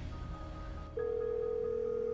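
Telephone ringback tone, the signal that the called phone is ringing: one steady tone that starts about halfway in and lasts a little over a second, over soft background music.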